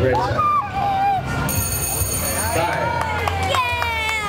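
Spectators shouting and calling out over one another, their voices rising and falling, with a loud falling shout near the end. A steady high-pitched electronic tone sounds for about a second midway.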